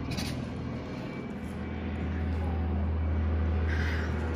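Tiger cubs chuffing, giving short breathy puffs through the nose close to the microphone, at the start and again near the end, over a steady low hum.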